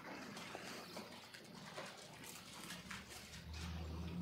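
Faint rustling and scattered small clicks in a quiet room, with a low hum that comes in near the end.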